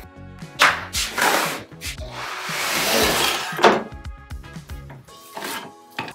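Background music over cardboard packaging being pulled and torn out of a flat-pack desk box: a long, loud rustling scrape about two seconds in, and several sharp knocks of cardboard and panels.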